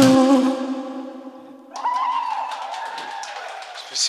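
A live synthpop song ends: the beat stops and the last synth chord rings out and fades. About two seconds in, a small audience starts applauding and cheering.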